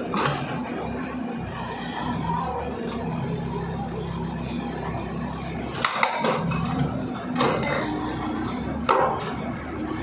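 Terex backhoe loader's diesel engine running steadily as its arm breaks into a house's brick masonry; bricks and rubble crash and clatter several times, loudest about six, seven and a half and nine seconds in.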